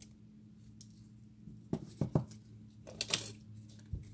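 Cubes of a carved bar of dry soap being broken and crumbled off by hand: a few short knocks, then one bright crackling crunch about three seconds in, and a soft thud near the end, over a steady low hum.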